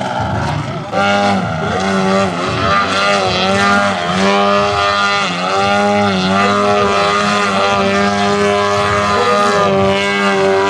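Engine and propeller of a large aerobatic RC model Extra 330SC in flight. The pitch rises and falls as the throttle is worked through the manoeuvres, with a short dip about a second in and a few brief sags later.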